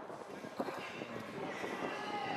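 Footballers celebrating a goal: a jumble of shouting voices mixed with many quick claps and slaps.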